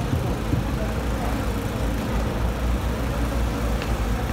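Steady low rumble of road traffic passing on a city street.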